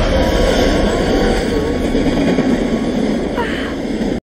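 Subway train rushing past a station platform, a loud, steady rush of noise that eases slightly toward the end.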